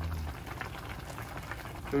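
Pot of doenjang soup with cabbage siraegi bubbling at a boil, with many small pops and a spoon stirring through the broth.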